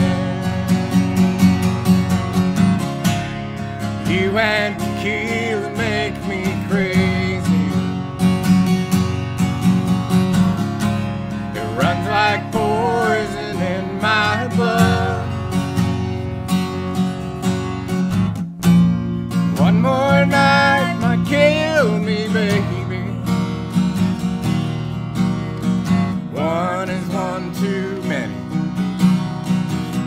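Live country song: a steel-string acoustic guitar strummed steadily throughout, with a sung or played melody line coming in and out in several short phrases.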